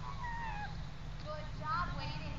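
Faint high-pitched calls that glide up and down in pitch, one just after the start and a cluster near the end, over a steady low rumble.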